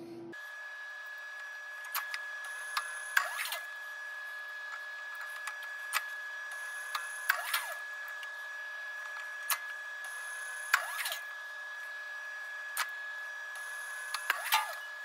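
Tensile testing machine with a steady high-pitched whine, broken by scattered sharp clicks and ticks from the line grips being worked.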